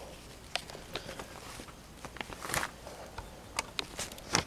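Faint handling noise: a few scattered light clicks and rustles as a handheld camera is moved about, with the strongest click about two and a half seconds in.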